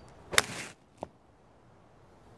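Hybrid golf club striking a ball off the turf: one sharp crack about a third of a second in, followed by a brief rush of noise, then a faint single click about a second in.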